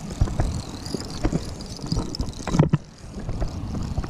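Low, steady rumble with scattered light knocks and rustles from handling a small action camera outdoors, as the angler works a lure snagged in the rocks.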